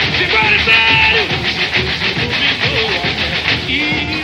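Samba-enredo from a samba school parade: voices singing over the bateria's percussion, which keeps a steady fast beat.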